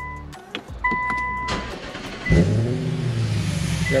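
Infiniti M56's VK56VD 5.6-litre V8 started by push button: an electronic chime sounds for under a second, then about two and a half seconds in the engine cranks, catches and keeps running. A hiss runs with it from a pretty good vacuum leak through the disconnected crankcase vent line rigged to draw in Seafoam.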